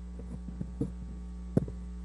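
Steady low electrical mains hum from an audio playback feed just switched into the sound system, with a few faint clicks, before a recorded statement starts.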